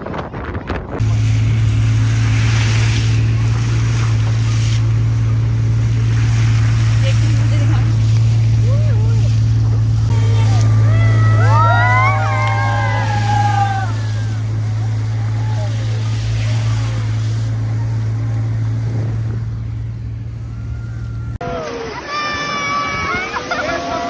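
Steady low engine drone of an open off-road jeep driving, heard from on board, that cuts off shortly before the end. Around the middle, several voices whoop and call out over it.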